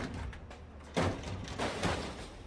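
The hood of a Toyota Supra being opened: a thud about a second in, followed by a rising rushing sweep as the hood lifts.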